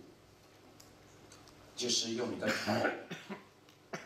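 A man's voice after a quiet pause, heard for about a second and a half starting near two seconds in, followed by a single sharp click near the end.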